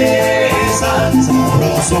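Live Cuban son band playing: strummed acoustic guitars over an upright bass line and percussion in a steady dance rhythm. A sung line comes in near the end.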